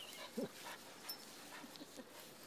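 A dog making one brief, faint pitched call about half a second in, over quiet background noise.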